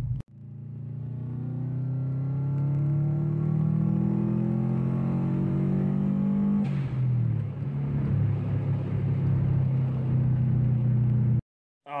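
Turbocharged 2002 Subaru WRX flat-four, fitted with a 20G eBay turbo, accelerating hard through a logged third-gear pull, heard from inside the cabin; the engine note climbs steadily in pitch. About two-thirds of the way through the pitch drops abruptly with a short hiss, and the engine carries on at a lower, steadier note until it cuts off suddenly near the end.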